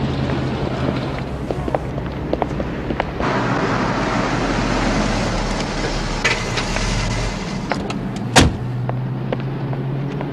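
A car's engine running with traffic noise around it, then a car door slamming shut about eight seconds in.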